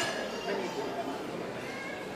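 Indistinct background chatter from several people: voices murmuring with no clear words.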